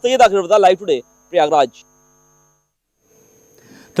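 A man speaking briefly with a steady electrical hum under his voice, then a gap of silence. A faint low hum comes back near the end.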